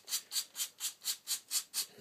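Sandpaper, 120 grit, rubbing down over a leather snooker cue tip in quick, even strokes, about four a second, shaping the tip into a dome. The grit is coarse enough to start tearing and fluffing the leather.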